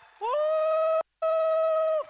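A single loud, drawn-out "woo!" cheer from one voice, sliding up in pitch and then held on one high note. It is broken by a brief dropout just past a second in.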